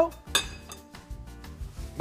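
A single sharp metallic clink of stainless steel cookware being handled, over quiet background music.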